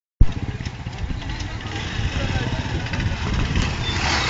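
Hero Honda CBZ 150 cc motorcycle's single-cylinder engine running with an uneven, pulsing low rumble, starting suddenly just after the start.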